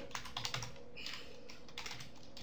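Computer keyboard typing: irregular keystrokes, several at first, a pause about a second in, then more keys near the end.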